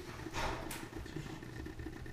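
A steady low hum of room equipment, with a pen scratching briefly on paper about half a second in as a word is written.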